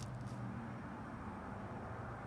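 Quiet background: a faint steady low hum with no distinct sounds.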